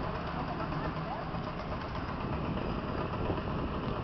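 Indistinct voices of people talking over a steady low rumble of street traffic and engine noise.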